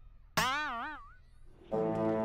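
Cartoon 'boing' sound effect: a sudden twangy tone that wobbles up and down in pitch and fades out within about a second. Near the end a held music chord begins.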